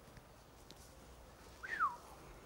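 Quiet room tone, then near the end a single short whistle that rises briefly and slides down in pitch.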